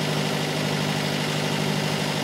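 Motorboat engine running at a steady, even pitch while the boat is under way, over a steady hiss of wind and water.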